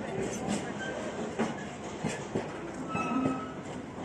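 Empty freight container flat wagons rolling past close by, with a steady rumble of wheels on rail and irregular clattering knocks as they pass over rail joints.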